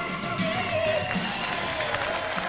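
Live pop-rock band music with a singer and drums, a long wavering note held over a regular beat.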